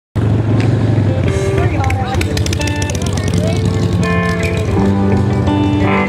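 A live band plays an instrumental country-ballad intro: electric lead guitar notes, some bent, over bass and drums with ticking cymbals. The sound cuts in abruptly at the very start.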